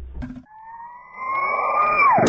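Radio jingle sound effect: a low rumble dies away in the first half second, then a siren-like electronic tone rises slowly in pitch and swells in loudness.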